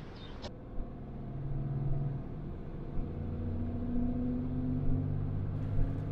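Engine and road noise of a moving vehicle heard from inside the cab, a steady low engine note that steps up in pitch partway through as it picks up speed.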